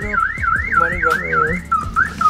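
Electronic warbling siren of the car-alarm kind, sweeping up and down about four times a second, then breaking off into a few short chirps near the end.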